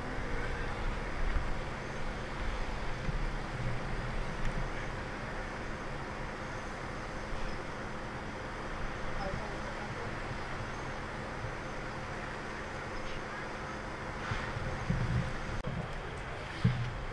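Steady outdoor background with a low rumble of motor vehicles, with faint voices now and then and a few low bumps near the end.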